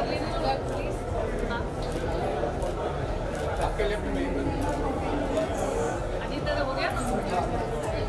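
Indistinct chatter of many people talking at once, overlapping voices with no single speaker standing out, over a steady low rumble.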